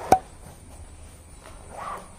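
The YKK zipper of a fabric helmet bag being drawn closed around the bag, a faint rasp of the slider. A single sharp click just after it starts is the loudest sound.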